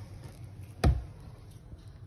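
A single dull thump about a second in, over a faint low hum.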